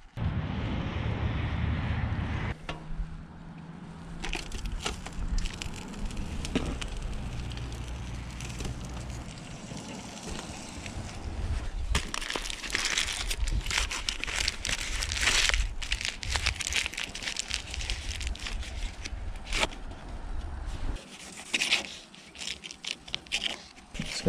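Salt shaken out of a shaker for the first couple of seconds, then aluminium foil crinkling and crackling on and off as a foil packet is handled.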